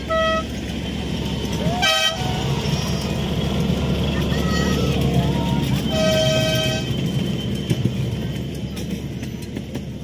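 Miniature park railway train running past, its wheels rumbling on the rails, louder in the middle as the cars pass close by. The locomotive's horn gives three short toots: one at the start, a very brief one about two seconds in and a longer one about six seconds in.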